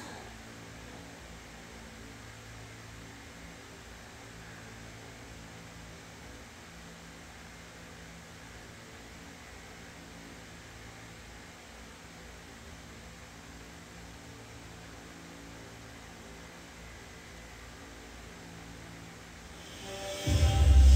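Steady low electrical hum with a layer of hiss and nothing else: room tone.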